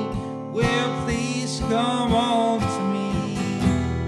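Acoustic guitar strummed in a slow folk song, with a man's voice holding sung notes over it without clear words.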